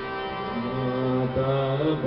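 Harmonium holding steady reed notes, joined about half a second in by a male voice singing a devotional bhajan chant in long held, gliding notes.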